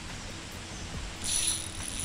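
A spinning fishing reel ratcheting, starting a little over a second in with a steady high-pitched clicking buzz, as its drag has just been loosened.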